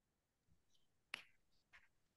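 Near silence with room tone, broken by one short, sharp click about a second in and a couple of much fainter ticks after it.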